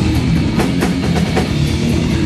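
A thrash metal band playing live and loud: distorted electric guitars and bass over a drum kit, with frequent drum and cymbal hits.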